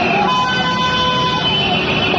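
Road traffic noise with vehicle horns held in steady tones, the main one sounding for about a second, over voices of people shouting.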